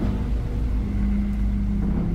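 Deep, steady rumbling drone with a held low tone underneath: dark ambient sound design in a horror podcast's intro soundtrack.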